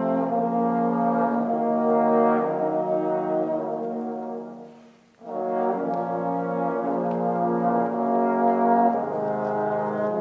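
Trombone quartet playing slow, sustained chords. The chord dies away to a brief silence about five seconds in, then the four trombones come back in together with a new phrase.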